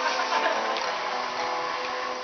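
Acoustic guitar being picked, its notes ringing, with light sharp ticks of the pick on the strings.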